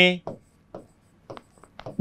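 Marker pen writing on a whiteboard: a few short, faint strokes as letters are written out.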